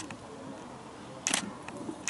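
A camera shutter clicking, single sharp shots: one right at the start and another about a second and a third in.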